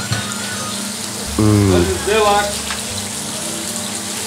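Food sizzling steadily as it fries in several pans on a gas range: sliced potatoes, meat and fish fillets in oil. A brief voice cuts in about a second and a half in.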